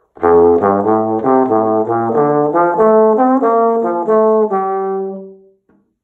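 Bass trombone with independent F and G-flat valves playing a quick bebop line in the low register: a B-flat major scale idea starting on F below the staff, played with the first valve down. It is a fast run of separate notes that ends on a held note, which dies away near the end.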